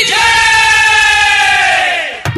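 A long, high, held shouted cry that slowly falls in pitch over a rushing crowd-like hiss, fading near the end, as in the opening call of a devotional song.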